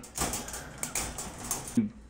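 Soft rustling with a few light clicks and rattles as a hand works at the wire bars of a dog crate.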